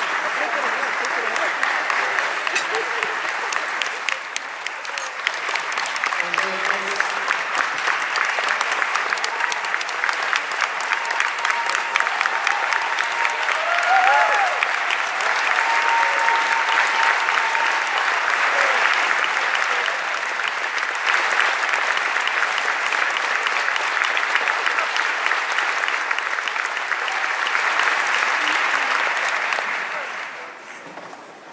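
Audience applauding at length, many hands clapping, with a few voices calling out in the middle; the clapping dies away at the very end.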